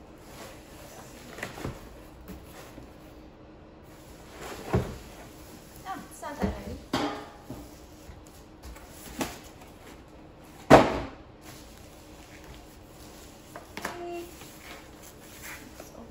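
A cardboard box tipped and handled while a plastic-wrapped air fryer is pulled out of it: scattered rustles of plastic sheeting, cardboard scrapes and knocks on the counter, the loudest a sharp knock about eleven seconds in.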